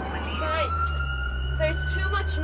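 Ambulance siren heard from inside the moving ambulance, one slow wail rising and then holding, over the low drone of the engine and road. Voices are heard at the same time.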